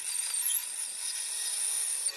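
Bandsaw running and cutting through a wooden guitar neck blank along the headstock-angle line: a steady, thin, high-pitched sound with little bass.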